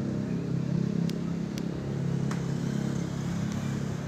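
A motor engine running steadily at idle, with a few faint clicks.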